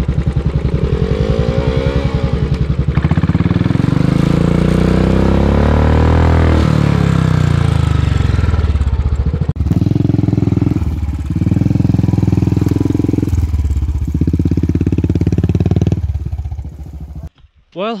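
Royal Enfield Classic 500's single-cylinder engine revving hard with the rear wheel digging into a slippery mud rut. The revs rise and fall over the first half, then come in short bursts of about a second each.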